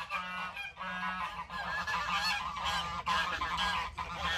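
A flock of white domestic geese honking over and over, many short calls overlapping. The geese are agitated and chasing young goats.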